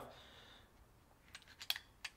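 A short cluster of sharp metallic clicks about a second and a half in, from a SIG P320 Compact pistol's action and magazine being worked by hand as it is checked to show it is unloaded.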